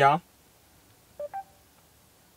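Two very short electronic beeps, the second a little higher, from the Mercedes MBUX voice assistant in a 2019 A-Class, sounding about a second after a spoken question ends: the system signals that it has taken the command before it answers.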